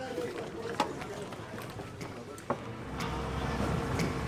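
Indistinct background voices with a few sharp knocks. About three seconds in, a low steady rumble sets in.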